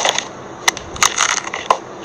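Dinner-table clatter: several sharp clicks and knocks, spread irregularly over two seconds, from chopsticks and paper takeout boxes being handled.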